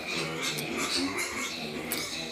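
Faint, indistinct voices, quieter than the narration around them.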